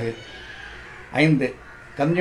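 A man speaking Tamil: a pause of about a second, then one short phrase about halfway through.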